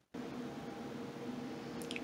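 Steady low hum of a running GQF Sportsman 1502 cabinet incubator, its fans blowing inside the cabinet, with a faint click near the end.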